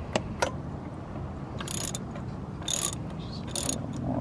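Ratchet wrench with a spark-plug socket clicking in short bursts, three times in the second half, as spark plugs are backed out of an air-cooled aircraft engine's cylinders.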